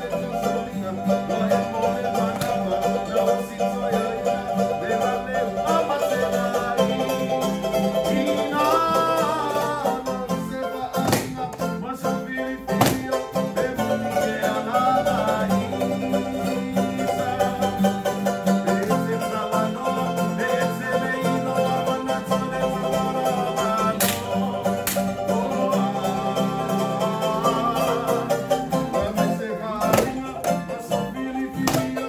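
Live Samoan string-band music with strummed guitars and bright plucked strings over a steady bass, played to accompany the dance. A few sharp percussive hits stand out partway through and again later.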